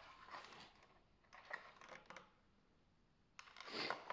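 Near silence with a few faint clicks and a brief rustle near the end: hands handling a 1/18 RC car's front suspension while fitting a replacement dog bone.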